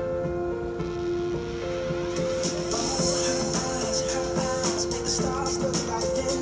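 Music playing from a CD through a Yamaha AST-C10 boombox's speakers: held chord notes, with quick high-pitched percussion coming in about two seconds in.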